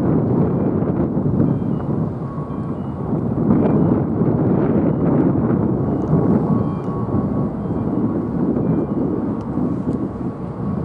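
Wind buffeting the microphone: a loud, uneven low rumble that swells and falls.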